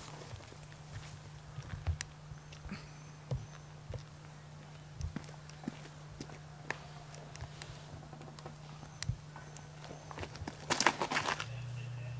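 A disc golfer's footsteps on a wooded dirt path, heard as scattered light knocks and crunches, with a quick run of louder footfalls near the end as he runs up to throw. A steady low hum runs underneath.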